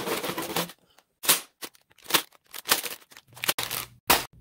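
Plastic LEGO parts bags crinkling and a cardboard box rustling as the set is unpacked by hand. A steadier rustle in the first half second gives way to short, irregular bursts.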